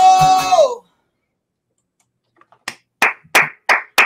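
A man's voice holds the last sung note of a song over acoustic guitar, the note sliding down and stopping about a second in. After a silent pause, one person claps about five times near the end.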